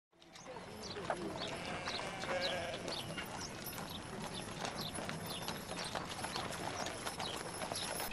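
Livestock camp ambience: a flock of sheep bleating, with horse hooves clip-clopping and a busy background, fading in over the first moment.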